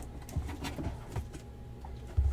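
Cardboard shipping box being handled: a few faint scrapes and taps as its flaps are pushed open and a shrink-wrapped box of cards is slid out.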